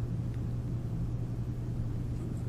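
Room tone: a steady low hum with faint hiss and no other events.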